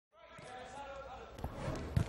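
Several young players' voices calling out during a training session, with two thuds of a ball, the second near the end.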